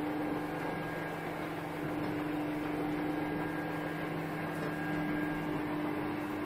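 Steady mechanical hum with a constant low tone inside a lift car, from the lift's machinery running.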